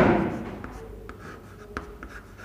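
Chalk writing on a blackboard: scratching strokes, loudest at the start and then fainter, with a sharp tap of the chalk near the end.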